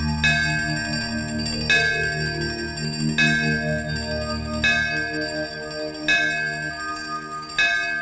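A temple bell struck six times at an even pace, about once every second and a half, each stroke ringing on into the next, over a steady low drone and soft held notes.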